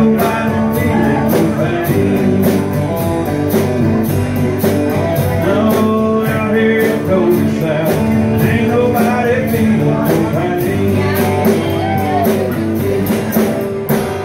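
Live rock band playing electric and acoustic guitars over a steady beat. The playing stops at the very end.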